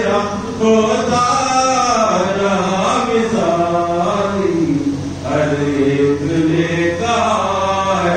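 A single voice chanting a sung Urdu devotional poem in long, drawn-out melodic phrases that glide up and down in pitch, with two brief breaks for breath.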